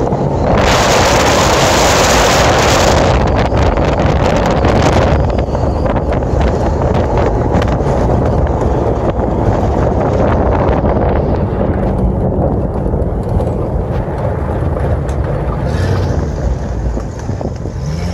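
A 4x4 driving on a paved road: a steady engine and tyre rumble, with wind buffeting the camera microphone. The buffeting is loudest in a gust a little after the start, and the sound gets a little quieter near the end.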